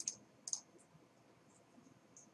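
Two faint computer mouse clicks about half a second apart, with a couple of fainter ticks after.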